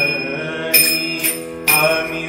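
Marathi devotional abhang music: a taal, a pair of small brass hand cymbals, is struck three times at a steady beat, about once a second, ringing bright over a man's sustained sung line.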